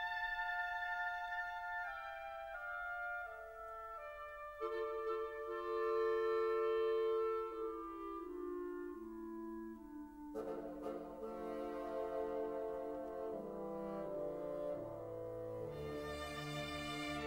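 Symphony orchestra playing a slow film-score passage in sustained brass chords whose notes move step by step. The texture fills out with more instruments about ten seconds in.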